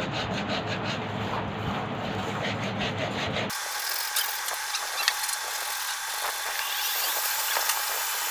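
Hand sanding of a wooden coat hanger: sandpaper rubbing back and forth over the wood in quick, repeated hissing strokes during its final finishing. About halfway through, the sound turns thinner and hissier.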